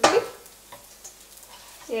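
A dosa frying faintly in oil in a nonstick pan while a slotted spatula slides under it to lift it, with a sharp scrape right at the start and a few faint ticks after.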